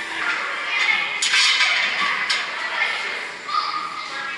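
Two sharp metallic clanks of a loaded barbell and its plates, about a second apart, over indistinct voices in a large echoing room.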